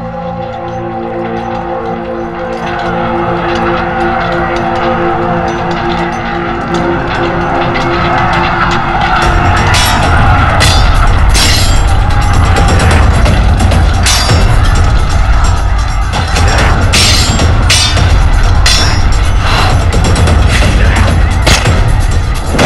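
Dramatic film score swelling steadily louder. About nine seconds in, a heavy low rumble and a string of sharp hits join it as the sword fight plays out.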